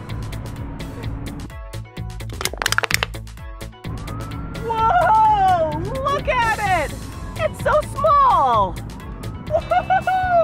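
An aluminium soda can crumpling under a shoe, a quick run of crackles about two and a half seconds in, over background music. A voice follows in the second half.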